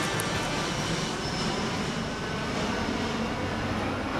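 Aircraft flying overhead: a steady engine noise with no clear pitch, holding at an even level.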